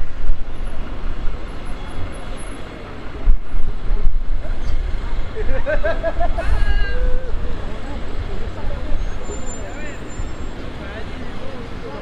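Town street ambience: a steady low rumble of traffic, with passers-by's voices heard briefly about halfway through.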